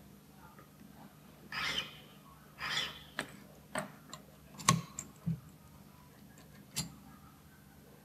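Two short rasping strokes of a small hand file on a key blank, filing down the pin marks as a step in lock impressioning, followed by about five sharp metallic clicks and taps, the loudest a little past the middle.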